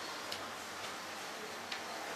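A quiet pause in a room: low steady background hiss with a few faint ticks.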